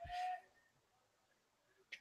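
Near silence in a pause between a commentator's phrases: a short faint breath-like hiss with a slight whistling tone at the start, then dead quiet.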